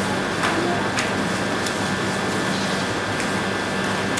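Steady background hiss with a faint constant hum and a few faint small clicks. No one is speaking and no single event stands out.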